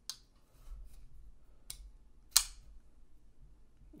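Metal clicks from a titanium frame-lock folding knife being worked open and shut to test for blade play after a pivot adjustment: a sharp click at the start, a smaller one a little later, and the loudest about two and a half seconds in, with faint small ticks between.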